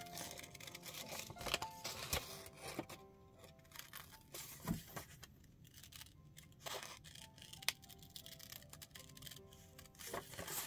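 Small craft scissors snipping through paper in short, irregular cuts along a traced outline, over quiet background music.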